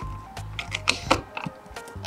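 Several light clicks and taps of a filler cap and its hinged flap being handled on the side of a camper van, over soft background music.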